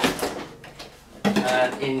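Stiff moulded plastic packaging tray scraping and rustling as it is lifted out of a cardboard box, fading after about half a second, then a man's voice.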